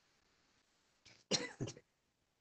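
A person coughing twice in quick succession over a video-call line, about a second and a half in, after near silence.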